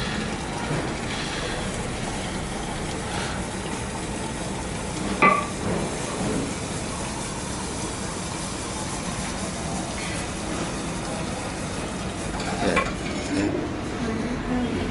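Liquid nitrogen hissing and sputtering steadily as it pours from a dewar's withdrawal hose into a stainless steel cup, boiling off on contact with the warmer metal. There is a single sharp click about five seconds in.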